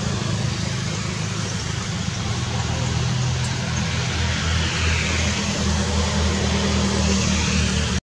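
Steady engine hum of a motor vehicle running nearby under a constant hiss, the low hum growing a little stronger in the second half.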